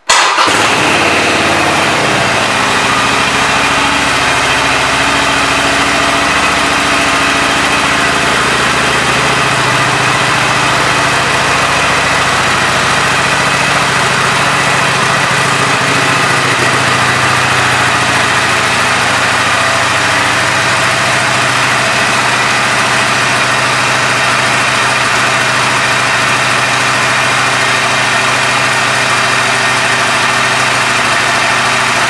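2020 Harley-Davidson Iron 883's air-cooled 883 cc V-twin starting right at the start, catching at once, then idling steadily.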